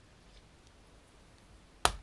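Quiet room, then a single sharp knock near the end.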